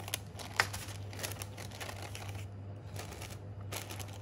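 Crinkling and rustling of a plastic piping bag and parchment paper being handled on a worktop, in short irregular bursts with one sharp click about half a second in. A steady low hum runs underneath.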